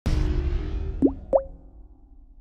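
Logo intro sting: a musical chord comes in at once and fades, with two quick rising 'bloop' pops about a second in, a third of a second apart.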